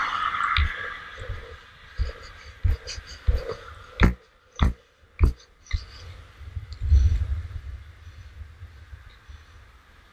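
Skateboard rolling along an asphalt path: a string of sharp knocks, roughly one every two-thirds of a second for the first six seconds, then a low rumble about seven seconds in that fades away.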